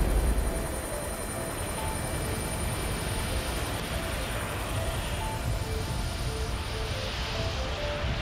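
Steady helicopter engine and rotor noise. At the start, the boom of an avalanche-control explosive charge dies away. Soft background music with scattered short notes plays underneath.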